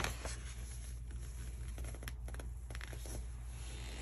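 Faint rustling and a few light ticks of fingers handling the paper page of a large softcover book, over a steady low hum.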